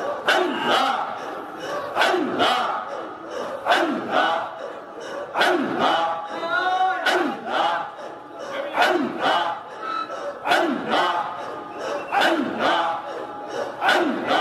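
Sufi dhikr chanting: a gathering of men, led by one voice on a microphone, calling out a short devotional phrase in unison in a steady rhythm. The strokes come in pairs about every second and a half, with a drawn-out, wavering sung note about halfway through.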